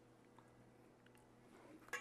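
Near silence: room tone with a faint low steady hum and a brief soft knock just before the end.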